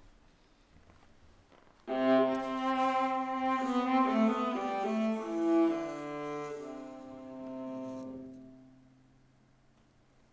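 Solo viola played with the bow: it starts suddenly about two seconds in with long sustained notes, several sounding together, and dies away near the end.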